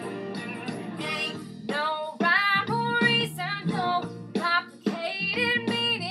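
A woman singing a song over strummed guitar accompaniment. Her voice comes in about a second in, after a brief instrumental stretch.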